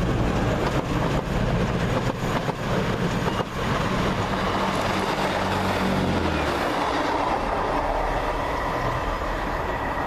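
Diesel multiple-unit trains passing close: a steady engine drone with the wheels clicking over rail joints in the first few seconds. The engine note drops away about six and a half seconds in, leaving the rumble of a train running by.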